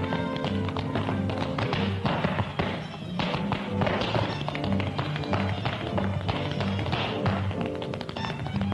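Big band playing an up-tempo number, with tap shoes clicking in quick rhythm over it.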